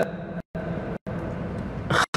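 A pause in speech filled with a steady background hum and hiss, broken twice by brief dropouts to complete silence.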